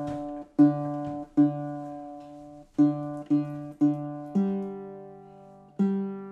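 Single strings of a freshly strung baritone ukulele with a sinker redwood top and Amazon rosewood back and sides, plucked one at a time while being tuned. A lower string is sounded five times, each note ringing out and fading, then a higher string twice. The new strings are still stretching and keep going out of tune.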